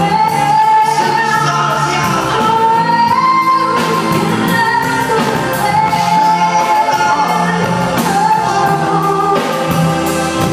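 Live cover band: a male and a female singer sing together into microphones over electric guitar and band backing, holding long notes.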